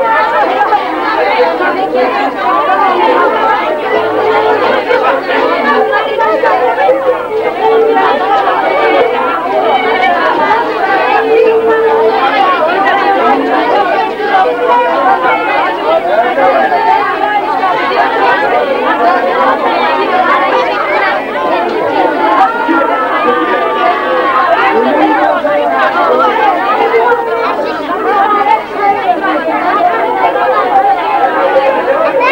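A close crowd of people chattering and talking over one another without a break, heard through an old camcorder tape's dull, thin sound with a steady low hum beneath.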